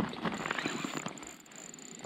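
Rapid, faint clicking from a spinning reel while a hooked lake trout is fought on the ice-fishing rod, fading somewhat after about a second.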